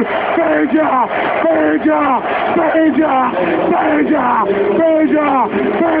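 A man's voice shouting 'gol' over and over in a long Spanish football goal call, about two syllables a second, each one falling in pitch.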